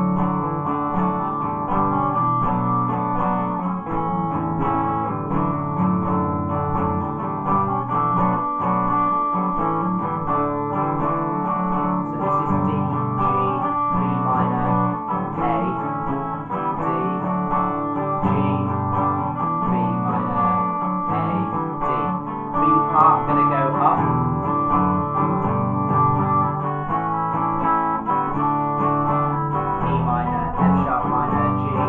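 Archtop guitar strumming first-position chords in D major, a continuous backing accompaniment for an Irish jig.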